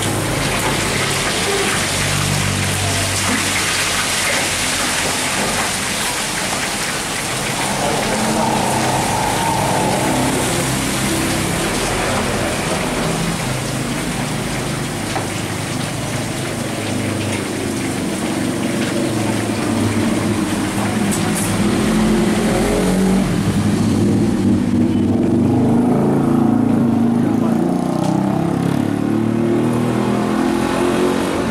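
Road traffic noise with voices talking over it, continuous throughout.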